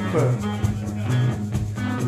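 Live rock band playing: electric guitars over a repeating low riff, with drums.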